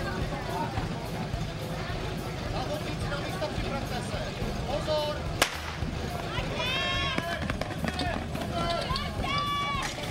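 A single sharp crack of a starter's pistol about five seconds in, signalling the start of a fire-sport attack, followed by high-pitched shouting.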